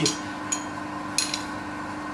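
A steel ring spanner working a clamping bolt at the base of a lathe's compound slide, loosening it: two short metallic clicks, one about half a second in and a slightly longer one just past a second in.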